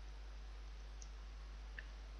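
Two faint computer clicks, about a second apart, from a mouse and keyboard, over a steady low hum.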